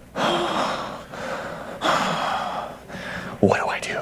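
A man heaving two long, heavy sighing breaths, each about a second, an acted-out sigh of dismay, followed by a short vocal sound near the end.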